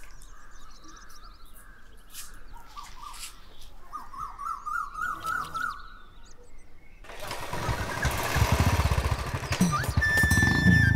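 Birds chirping faintly, then about seven seconds in a Royal Enfield motorcycle's single-cylinder engine starts and runs loudly with an even low beat.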